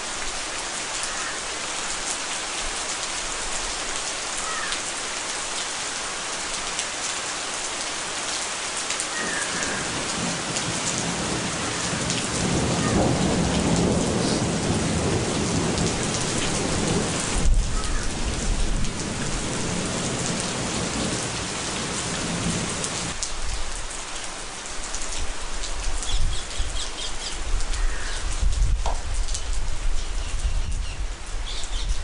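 Heavy monsoon rain falling steadily on forest and grassland. A long, low roll of thunder builds about a third of the way in and dies away about two-thirds of the way through.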